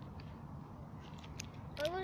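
Faint small clicks and crinkles of earrings being handled over a steady low outdoor rumble, with a girl's voice starting near the end.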